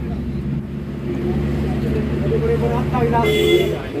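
Background voices of people talking over a low steady rumble like passing road traffic, with a brief higher-pitched sound near the end.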